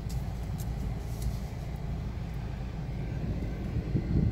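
Car cabin noise while driving: a steady low rumble of engine and tyres heard from inside the car.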